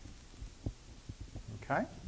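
A quiet pause with a few soft, low thumps scattered through it, and a brief man's vocal sound near the end.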